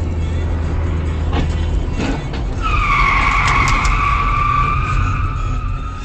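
Car tyres squealing in a long skid, starting about two and a half seconds in and holding a high, slightly falling pitch to the end, over steady road noise. A sharp knock comes just before the squeal, and a few clicks come during it.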